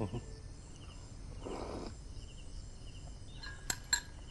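Crickets chirping steadily in the background, with a brief soft breathy noise about a second and a half in. Near the end come two light clinks of a spoon against a porcelain soup bowl.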